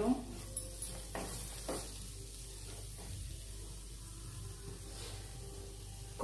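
Spatula stirring and scraping onion-tomato masala in a frying pan, a few scrapes in the first two seconds, then a faint steady sizzle as the masala fries.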